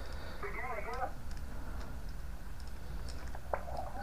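Small SDR shortwave receiver's speaker hissing with band noise as it is tuned up the 20-metre amateur band. About half a second in, a brief burst of garbled, off-tune voice passes through the hiss. There is a faint click near the end.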